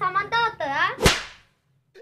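A voice speaking, then about a second in a single sharp, loud crack with a short fading tail, like a whip crack or a hard slap.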